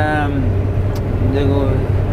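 Steady low drone of a Claas combine harvester's engine running during grain unloading, under a man's voice that ends a word at the start and makes a short hesitation sound about a second and a half in.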